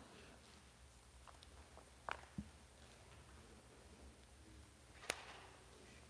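Near silence: room tone with a low steady hum and a few faint, brief clicks or knocks, about two seconds in and again near the end.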